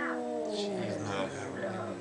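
Siamese cat giving one long, drawn-out yowl that slides slowly in pitch and fades near the end: a hostile warning at another cat.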